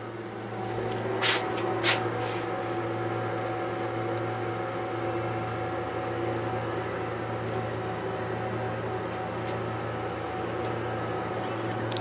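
Anolex 3020 desktop CNC router running its Z-probe routine: its stepper motors whine steadily at a constant pitch over a low hum. Two sharp clicks come at about one and two seconds in.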